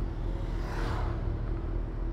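Motorcycle engines idling steadily while stopped. About a second in, an oncoming motorcycle passes close by, its sound swelling and dropping in pitch as it goes.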